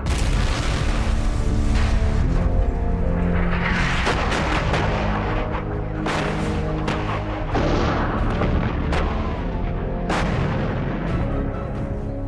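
Artillery shell explosions, a sharp blast every second or two, over a dramatic music score with sustained low tones.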